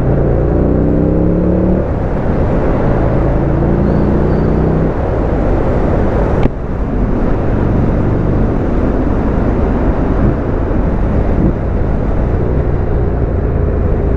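A Buell XB12X's V-twin engine pulls hard under acceleration, its pitch rising twice with a gear change about two seconds in, then runs more steadily at cruising speed over a rush of wind noise. A single sharp click sounds about six and a half seconds in.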